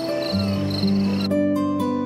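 Crickets chirping in steady pulses under music with long held notes; the crickets cut off suddenly about a second and a half in, leaving the music alone.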